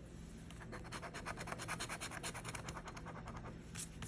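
A large metal coin scratching the coating off a scratch-off lottery ticket's bonus spot: quick, even back-and-forth strokes, about eight a second, for roughly three seconds.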